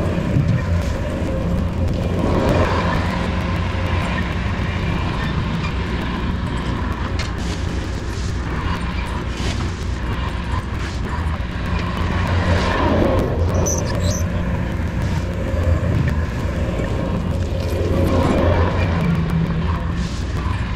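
Diesel engine of heavy construction equipment running steadily, working harder and rising in a couple of swells, around the middle and near the end.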